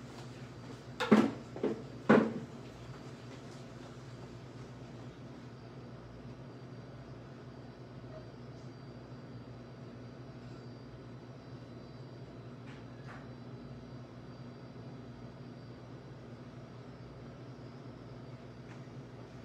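Three quick thumps about a second in, then a steady low hum of room tone with two faint clicks about two-thirds of the way through.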